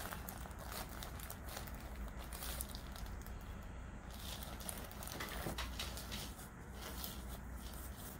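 Soft rustling and scattered faint clicks from hands handling a patient's head and neck on a chiropractic table, over a faint steady low hum.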